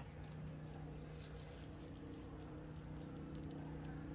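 A steady low hum holding one pitch, over faint background noise.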